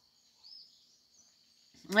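Quiet outdoor background: a faint steady high-pitched hum and one faint short chirp, like a bird's, about half a second in. A woman's voice starts just before the end.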